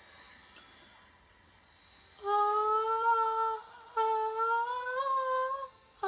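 A boy's unaccompanied voice humming two long, wordless notes, starting about two seconds in after a near-quiet pause.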